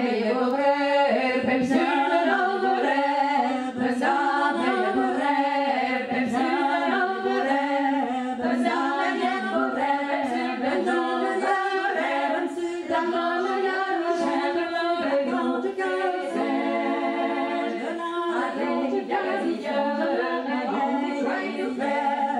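Four women's voices singing a Breton song a cappella in harmony, unaccompanied by instruments.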